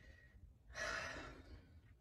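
A woman's sigh: one breathy exhale lasting about a second, starting a little after the middle of a pause in her speech.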